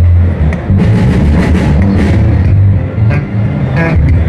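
Two electric basses, a Music Man StingRay and a Fodera, jamming a groove together through bass amplifiers: loud, heavy low notes shifting in pitch, with a few sharp note attacks.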